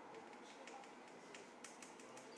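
A few faint, irregular clicks of computer keys being pressed, over quiet room hiss.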